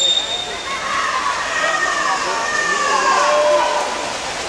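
Spectators in an indoor pool hall cheering and shouting during a swim race, their voices rising and falling over a steady echoing hiss. A shrill, steady whistle tone fades out about half a second in.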